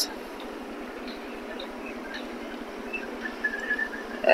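Quiet outdoor background: a steady hiss of open-air ambience with a few faint, short high tones, one held briefly near the end.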